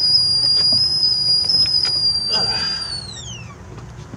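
Stovetop whistling kettle whistling on a gas burner: one steady high note that, about three seconds in, slides down in pitch and dies away as the steam eases.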